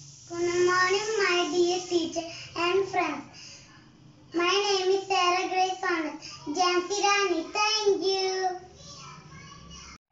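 A young child singing alone in short phrases with held notes, pausing for about a second midway.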